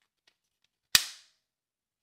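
A single sharp plastic snap about a second in, fading quickly, as a red plastic mouth piece is pressed and clicks into the face slot of a toy Minion figure.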